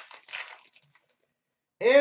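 A sharp click, then about half a second of faint rustling as trading cards are handled. A man starts speaking near the end.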